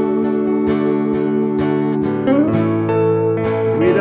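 Instrumental guitar passage: acoustic guitar strummed in a steady rhythm under long held electric guitar notes, with a few short sliding notes.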